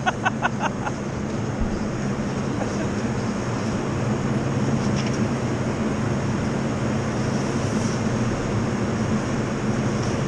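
Snowboard sliding and scraping over packed snow, a steady hiss, with a steady low hum underneath. A brief run of quick clicks comes right at the start.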